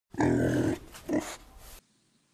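A loud growl-like animal sound lasting about one and a half seconds, ending abruptly.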